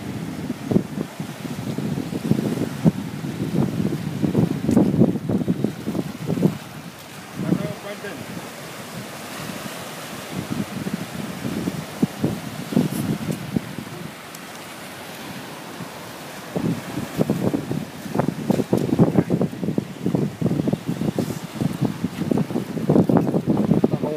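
Small waves washing over a rocky shore, with wind buffeting the microphone; voices talk on and off over it, more steadily in the last several seconds.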